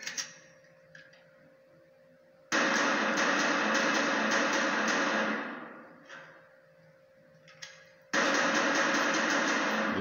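A film soundtrack playing from a TV and picked up by a phone, with a low steady hum. About two and a half seconds in, a loud, dense sound starts abruptly, lasts about three seconds and fades away. A second loud stretch starts suddenly near the end.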